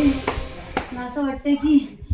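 Background music cuts off, followed by two sharp clicks. About a second in, a woman's voice begins.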